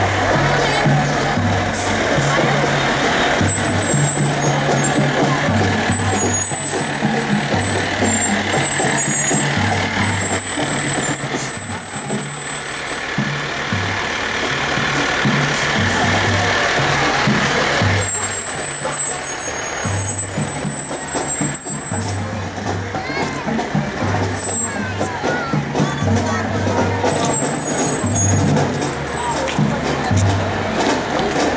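A marching drum and bugle corps playing as it passes, its deep notes pulsing in a steady rhythm, with spectator chatter mixed in.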